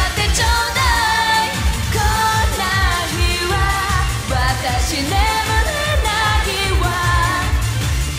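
A Japanese pop song sung by a group of amateur cover singers over the original backing track, with a steady beat; the sung line changes about halfway through.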